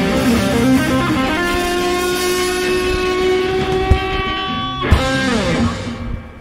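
Live rock band with electric guitars, bass and drums holding the final chord of a song. A sharp hit comes about five seconds in, after which the held notes slide down in pitch and die away.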